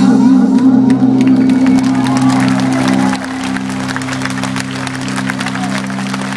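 Live rock band holding a sustained low chord at the end of a song, dropping in level about three seconds in, while the open-air crowd claps and cheers.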